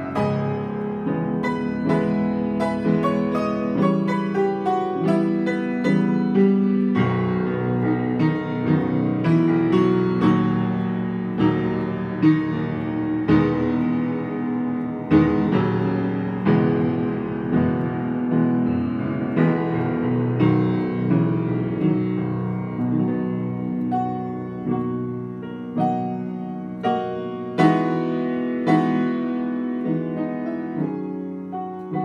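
Schwechten upright piano being played after its restoration, now fitted with a new Wessel, Nickel & Gross under-damper action. A continuous piece of chords and melody, with notes struck in quick succession and some louder accented chords.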